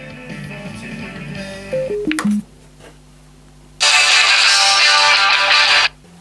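Guitar-led pop music played from a phone over Bluetooth through an old JVC mini hi-fi's speakers. It breaks off about two and a half seconds in, leaving only a low steady hum, then comes back much louder and fuller about four seconds in and stops abruptly just before the end.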